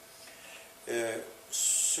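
A man's voice over a microphone: a short, low hum-like vocal sound about a second in, then a long, loud 's' hiss as he begins his next word.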